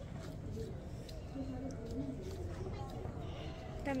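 Faint talk in the background over a steady low rumble.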